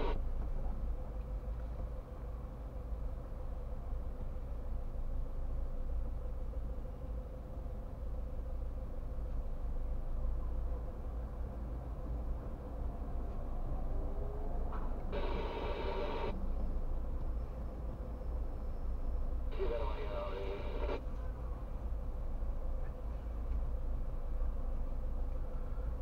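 Steady low rumble inside the cabin of a car waiting at standstill, with a faint steady hum. Two short bright bursts, each about a second long, stand out about fifteen and twenty seconds in.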